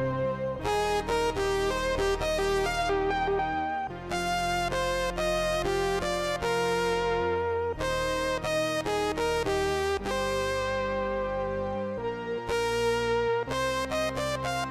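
Moog One polyphonic analog synthesizer playing a factory preset, both hands on the keys: held lower notes under a moving higher line. Each note starts sharply, and its bright upper overtones fade away.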